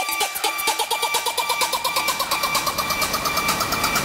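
Dutch house build-up: a fast run of repeated synth notes climbing steadily in pitch over a swelling rush of noise, rising toward the drop.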